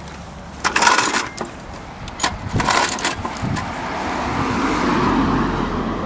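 Two pulls on the recoil starter cord of a Murray 4.5-horsepower push mower, each a short rasping whirr about half a second long, without the cold engine catching. A steady noise slowly grows louder in the last couple of seconds.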